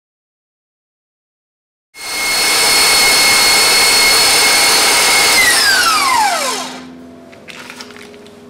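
KitchenAid stand mixer with a wire whisk whipping cream-cheese whipped-cream frosting to stiff peaks: a loud, steady motor whine that starts abruptly about two seconds in. About five seconds in the mixer is switched off and the whine falls in pitch as the motor spins down, leaving a faint hum.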